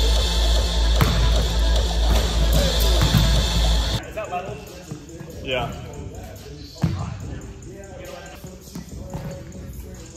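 Background music with a heavy bass line that cuts off suddenly about four seconds in. After it, gym room sound with one sharp basketball bounce on the hardwood court near the seven-second mark.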